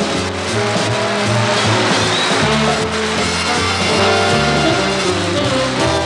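Big-band swing jazz with brass playing.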